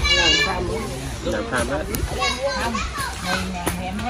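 Children's voices and chatter from several people at once, with a loud, high-pitched child's call in the first half second.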